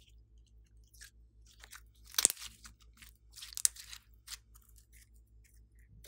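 Glossy slime being stretched and squeezed by hand, giving sticky clicks and crackles, with two louder snaps a little over two and three and a half seconds in.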